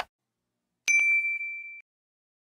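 Notification-bell ding sound effect: one clear ring about a second in, fading out within about a second.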